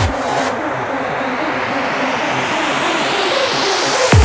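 Psytrance breakdown: the kick drum drops out and a rising noise sweep builds for about three and a half seconds over a repeating synth line.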